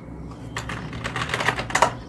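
Computer keyboard typing: a quick run of keystrokes that starts about half a second in and stops near the end.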